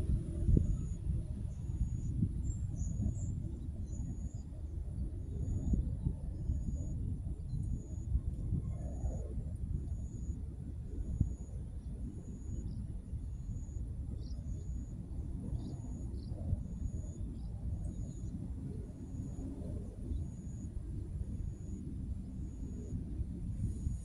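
Outdoor wind rumbling unevenly on the microphone, with a faint high chirp repeating about once a second throughout.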